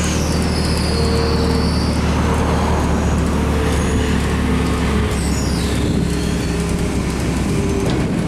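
Komatsu forklift engine running steadily while the raised platform holds its riders high on the mast. A faint high whine glides down in pitch near the start and again about five seconds in.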